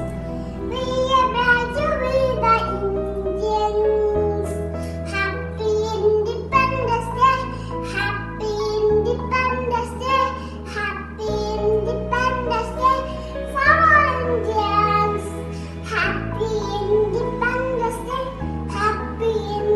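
A Hindi song with a sung melody over a backing track, its bass notes changing about every two seconds.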